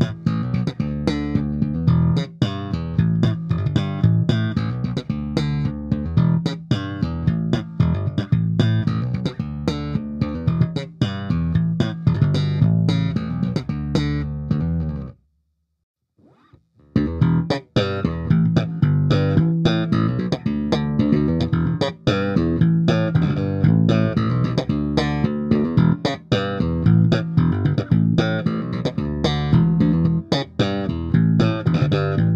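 MTD Kingston Saratoga electric bass played slap-style, a busy line of slapped and popped notes with the neck pickup alone. About halfway through it stops for a second or two of silence, then the slap playing resumes with the bridge pickup alone.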